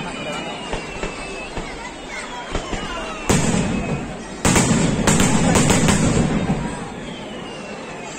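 Aerial firework shells bursting overhead: a sharp bang about three seconds in, then another bang and a quick run of bangs around five seconds, each followed by a shower of crackling.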